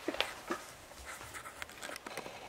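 Faint handling and rustling noises with a few short clicks and brief breathy blips, mostly in the first half second.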